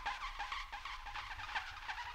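Live electroacoustic music: a rapid, uneven stream of short, high, downward-bending electronic chirps, about five a second, with no low sustained notes underneath.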